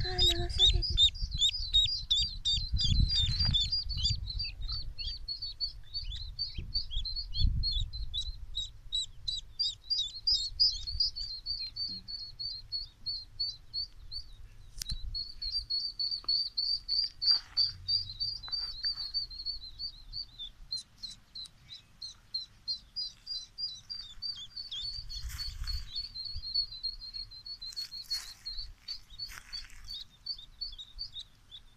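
Spot-billed duck duckling peeping over and over, short high peeps about three or four a second with only brief pauses. A low rumble underlies the first few seconds.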